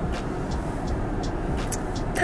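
Steady low hum inside a stationary car's cabin, with a few faint short ticks and rustles.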